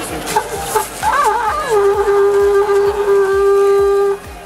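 A curved animal horn blown as a signal horn: a wavering start about a second in, then one long steady note held until it cuts off at the end. It is sounded to mark the tapping of beer.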